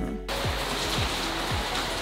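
Background music with a steady beat. About a third of a second in, a steady even hiss comes in under it.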